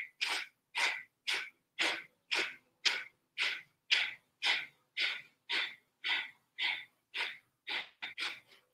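A woman's short, forceful exhales in a steady rhythm of about two a second: kapalabhati pranayama, each breath pushed out by snapping the belly button back.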